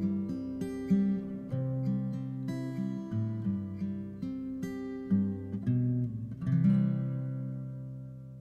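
Cutaway acoustic guitar playing a slow picked passage of separate notes, then a last strummed chord about six and a half seconds in that rings out and fades away, ending the song.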